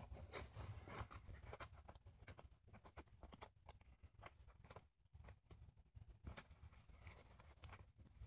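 Near silence, with faint scattered clicks and scrapes of a plastic carpet-gripper retainer being worked by hand into a hole in a rubber car floor mat.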